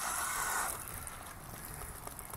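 Water running and dripping out of a waterlogged RC radio transmitter, a soft trickle that fades after about half a second to faint background noise.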